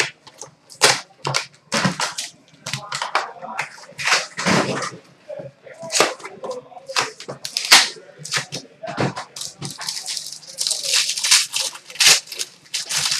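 Foil wrapper of a trading card pack crinkling and rustling as it is handled and opened, with a run of irregular crackles and a few sharper tearing sounds.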